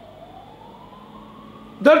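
A faint siren wailing, its pitch sliding down and then slowly back up; a man's voice starts near the end.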